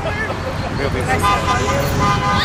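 Car horn sounding one steady held note, starting about a second in, over the noise of passing road traffic.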